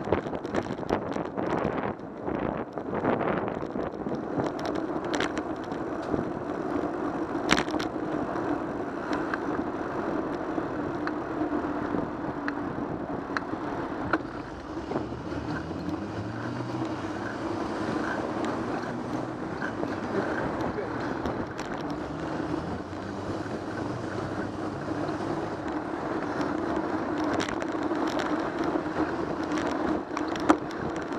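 Ride noise from a bicycle-mounted camera: a steady hum of tyres on the road and wind on the microphone, with city traffic around it. Through the middle, a motor vehicle's engine rises in pitch in several steps as it accelerates through its gears. There is a single sharp knock about seven seconds in.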